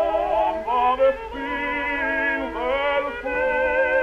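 Operatic baritone and mezzo-soprano singing a duet with wide vibrato, heard on a 1912 acoustic Victor disc recording: the sound is thin and cut off above about 4 kHz, with a faint low rumble of surface noise.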